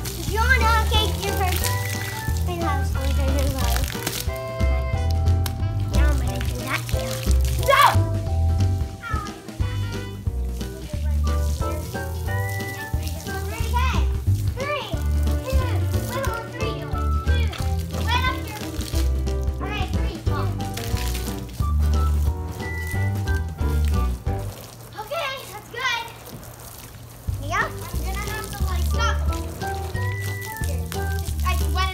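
Background music with a pulsing bass beat, with children's voices and calls over it.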